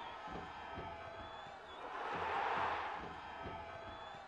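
Stadium crowd noise from football supporters, swelling into a loud roar about two seconds in as a penalty kick is taken. Low thumps repeat about twice a second underneath.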